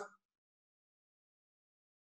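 Near silence: the sound drops out completely, with only the last trace of a man's voice fading in the first moment.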